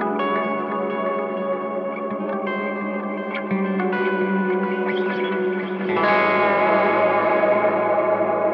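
Electric guitar played through an engaged MXR Timmy overdrive pedal, with reverb on. Sustained notes and chords ring with long echoing tails. About six seconds in, a louder, deeper chord is struck and rings on.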